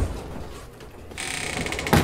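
Hard-shell wheeled suitcase being moved: a fast, even, ratcheting rattle of clicks starts a little past a second in and ends in a sharp knock near the end.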